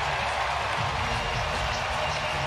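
Ice hockey arena crowd cheering and applauding a home-team goal, a steady wash of noise.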